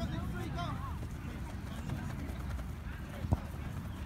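Faint, distant voices with a steady low rumble underneath, and a single sharp knock a little over three seconds in.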